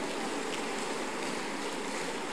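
A large congregation applauding in a hall, a steady wash of many hands clapping at once.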